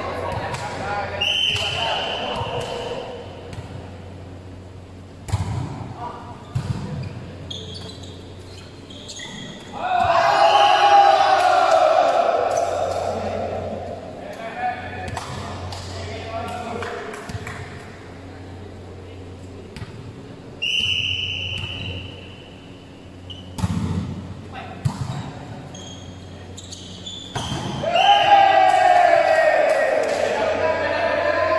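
Volleyball being played in a large, echoing hall: the ball is struck again and again with sharp slaps and thuds. Players shout loudly about a third of the way in and again near the end, and two brief high-pitched tones sound, one early and one about two-thirds of the way through.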